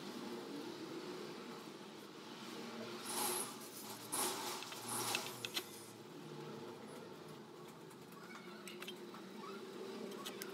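Hands handling a cement-putty planter, giving a few short rustling, scraping sounds about three to five seconds in over a faint steady room noise.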